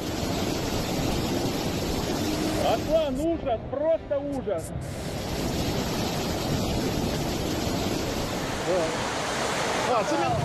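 Muddy floodwater rushing through a street, a steady loud rush of water, with a person's voice calling out a few seconds in and a short laugh about halfway through.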